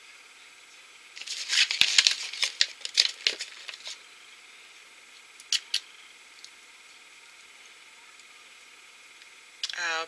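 Blind-bag packaging crinkling as it is handled, for about three seconds starting a second in, followed by two light clicks near the middle.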